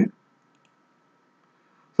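Two faint short clicks in quick succession at a computer, the input that runs the query, with faint room hiss around them.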